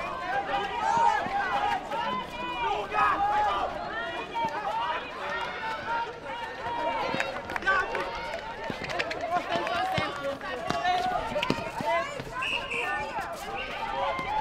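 Many voices shouting and calling over one another from players and spectators at a netball game, with footsteps on the hard court and a few sharp knocks.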